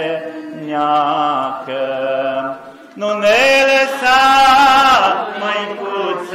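A man's voice singing a slow Romanian Orthodox hymn to the Virgin Mary into a hand microphone, in long drawn-out notes that glide from one pitch to the next. It is loudest from about three to five seconds in.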